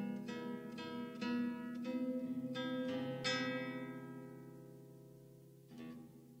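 Solo classical guitar with nylon strings: a string of plucked notes and chords over the first three seconds or so, then a last chord left ringing and slowly fading, with a new note struck near the end.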